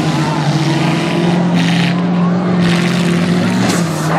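V8 demolition derby car engines running hard under load, a steady drone that steps up in pitch about a second in, with three short crunching bursts as the cars collide and push.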